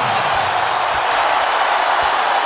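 Arena crowd cheering: a steady, loud wash of many voices.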